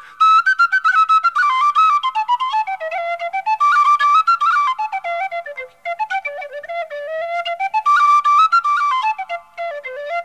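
A solo Irish traditional dance tune played on a flute-family wind instrument: a single quick, ornamented melody line that moves up and down through the middle-high range. There are short breaks for breath about six seconds in and near the end.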